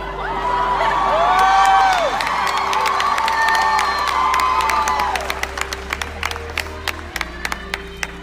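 A large audience cheering and whooping, loudest about two seconds in, then easing into scattered clapping from about five seconds in. Quiet background music runs underneath.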